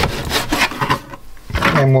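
Kitchen knife cutting raw chicken thigh meat on a cutting board: a few quick strokes in the first second, each scraping and tapping on the board.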